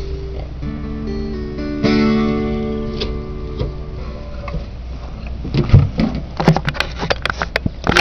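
Cutaway acoustic guitar playing a few held notes, with a chord strummed about two seconds in that rings and fades away. From about halfway on, a run of loud knocks and bumps close to the microphone.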